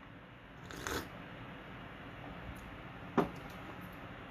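A person taking a short sip of tea from a mug, a brief slurp about a second in, then a short soft click a couple of seconds later over quiet room noise.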